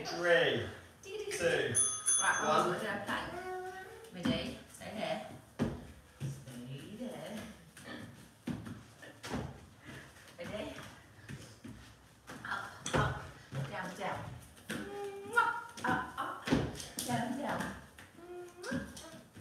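Indistinct voices with unclear words, loudest in the first few seconds and again near the end, broken by a few brief knocks.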